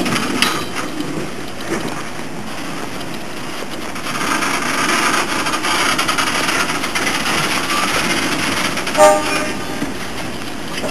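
A train of old railway wagons rolling slowly past on the track, wheels on the rails giving a steady rumble that grows louder about four seconds in. About nine seconds in comes a brief loud tone.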